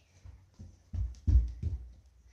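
Three heavy, low thumps in quick succession about a second in, the middle one the loudest.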